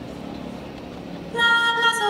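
Low crowd and stadium background, then about two-thirds of the way in the marching band enters suddenly with a loud held chord of sustained notes.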